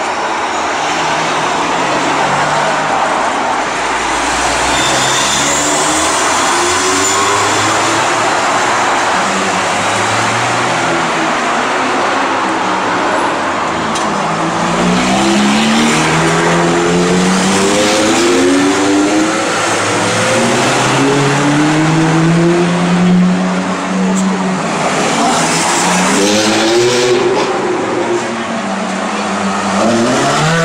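Ferrari sports car engines running and revving as the cars drive past one after another, the engine note rising in pitch several times, most clearly in the second half.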